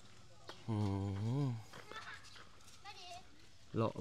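A man's long drawn-out 'uhh' that rises and falls, with a few faint footsteps on a dirt path before and after it; a short faint wavering call sounds about three seconds in.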